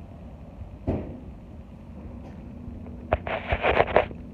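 Handling noise from a phone held against a dog's fur: one knock about a second in, then a loud burst of crackling rubbing near the end as the phone is moved.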